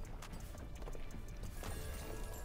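Online slot game's background music, low and dark, with a few soft clicks as new symbols drop onto the empty reels.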